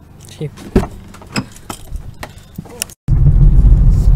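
A string of sharp clicks and knocks as a Ford Ka's door handle is worked and the door opened. After a sudden cut about three seconds in, a loud steady low rumble of the small car driving, heard from inside the cabin, takes over.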